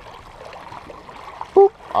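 Small waves lapping on a rocky lake shore, a steady wash of water. Near the end, a short spoken word from a person.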